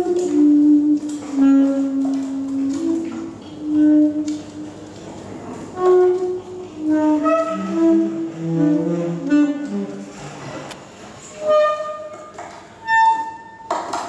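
Tenor and alto saxophones improvising free jazz together: short held notes and phrases, each started sharply, separated by brief pauses.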